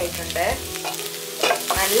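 Ivy gourd pieces sizzling as they are stir-fried in a nonstick pan, with a wooden spatula stirring and scraping through them.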